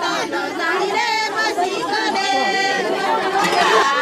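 A group of high women's voices singing together, some notes held for a moment, over the chatter of a crowd.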